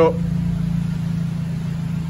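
Honda Civic Type R FN2's four-cylinder engine idling steadily on the rolling road, a low even hum.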